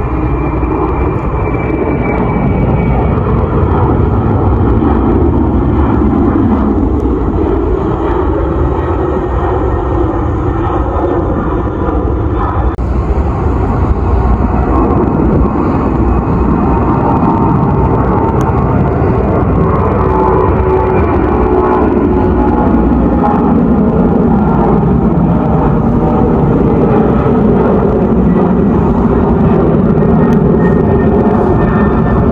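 Jet engines of departing heavy widebody cargo jets at takeoff power: a loud, steady rumble as they climb out. The sound changes abruptly about 13 seconds in, where one climb-out gives way to another.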